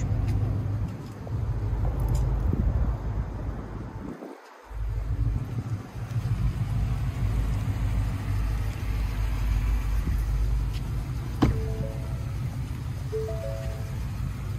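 A steady low rumble, cutting out sharply for about half a second around four seconds in. Near the end a few short notes of background music come in.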